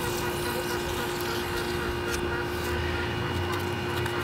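Steady mechanical hum from a running machine, with one constant mid-pitched tone and a few faint clicks.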